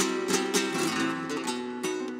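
Flamenco acoustic guitar playing alone between sung lines: ringing plucked notes broken by several sharp strummed accents.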